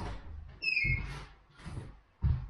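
Heavy barefoot footsteps on a wooden floor, three dull thuds a little under a second apart. A short high squeak comes about two-thirds of a second in.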